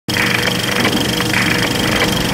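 Intro music for a logo sequence, starting abruptly from silence: a dense, rattling noise with a steady high tone running through it and brighter swells about once a second.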